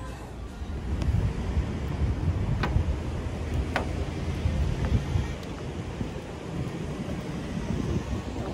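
Wind buffeting a phone microphone outdoors, an uneven low rumble that is strongest through the first half. Two short sharp clicks about a second apart come near the middle.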